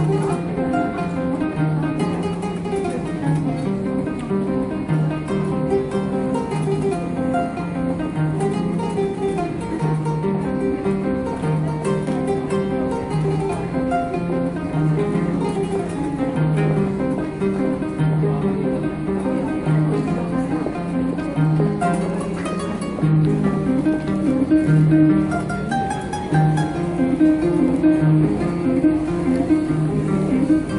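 Kora, the West African calabash harp, played solo: a repeating plucked bass pattern under quick melodic runs. It grows louder and busier about three-quarters of the way through.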